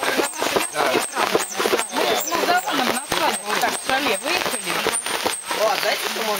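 Indistinct chatter of several people talking, cut by a sharp, regular clicking about three times a second that stops near the end.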